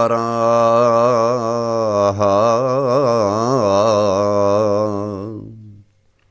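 A solo male voice singing a Greek folk song unaccompanied: long held notes with a slow, ornamented waver in pitch. The phrase fades out about five and a half seconds in.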